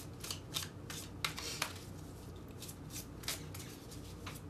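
Tarot cards being shuffled by hand: a string of short, irregular swishes and taps as the cards slide against each other, closer together in the first half and sparser later.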